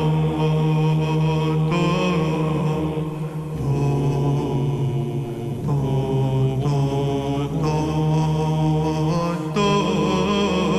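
Solo male Byzantine chanter singing a terirem, a wordless melismatic chant on syllables like 'te-ri-rem', in ornamented phrases over a sustained ison drone that changes note a few times.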